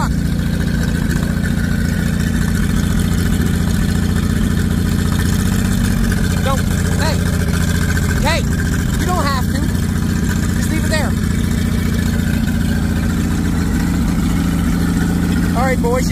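Old race car's flathead engine running steadily at low revs while the car is driven slowly.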